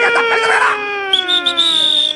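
A performer's mouth-made imitation of a wartime sound effect: one long whistling tone sliding slowly downward in pitch, with a second, higher tone joining about halfway through.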